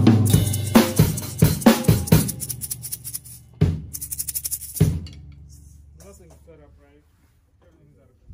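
Acoustic drum kit played hard: quick strokes on snare, toms and kick with cymbals for the first couple of seconds, then a few last hits a little over three and a half and nearly five seconds in. The drums ring out and fade to near quiet.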